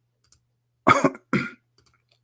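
A man coughs twice in quick succession about a second in, followed by a few faint clicks.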